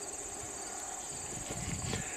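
Steady high-pitched chirring of crickets in the grass, with faint low handling knocks building in the second half.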